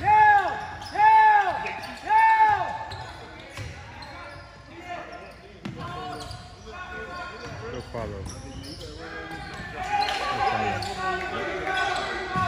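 Basketball game on a hardwood gym court: the ball bouncing and players' voices, with three loud, short squeals that rise and fall in pitch, about a second apart, in the first few seconds.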